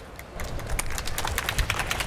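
A quick, irregular run of light clicks and taps over a low rumble, starting about half a second in.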